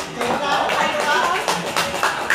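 Voices talking over music that keeps a steady beat of sharp taps, about three a second.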